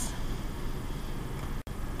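Steady background noise: a low hum under an even hiss, with a very brief dropout near the end.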